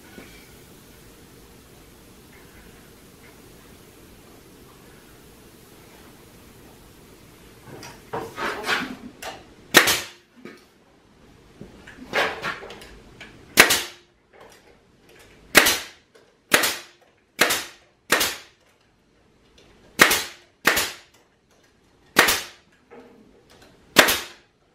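Pneumatic 18-gauge brad nailer firing brads into pallet-wood boards: about a dozen sharp shots at uneven intervals, starting about a third of the way in after a stretch of faint steady background noise.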